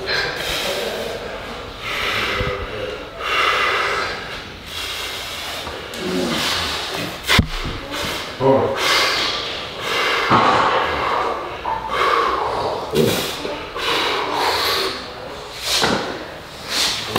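A strongman breathing hard in sharp, repeated breaths as he braces over a 300 kg axle-bar deadlift and starts the pull. A single sharp knock comes about seven seconds in.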